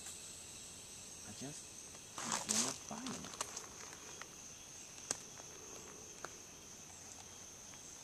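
Faint, steady, high-pitched insect chorus, with a low mumbled voice about two to three seconds in and a few small clicks.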